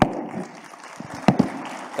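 Audience applauding, with one sharp knock a little after a second in.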